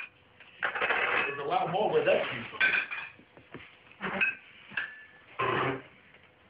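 China plates and cutlery clinking as dinner is set down on a table, with a few short ringing clinks, alongside brief voices.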